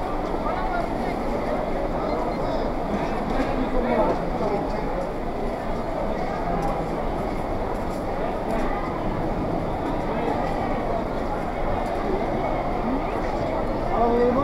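Steady hubbub of a busy covered market: many indistinct voices and general bustle in a large hall, with no single voice standing out.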